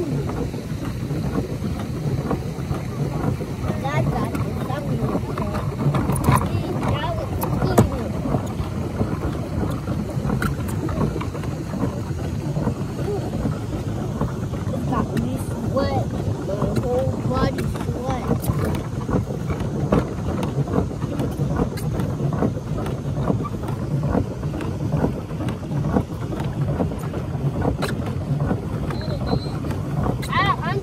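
Pedal boat's paddle wheel churning water steadily as it is pedalled, with wind on the microphone and faint, indistinct voices.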